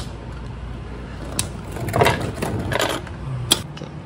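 Metal clicks and clinks of hand tools on the transfer case fill bolt as it is backed out: single sharp clicks about a second and a half in and near the end, with a run of quick rattling clicks around the middle.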